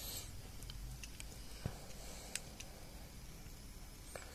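Faint, scattered clicks and taps of hands handling a smartphone's parts and a small screwdriver during reassembly, over a low steady hum.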